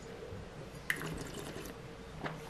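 Faint sounds of a man sipping red wine from a stemmed glass and working it in the mouth, with a small sharp click about a second in.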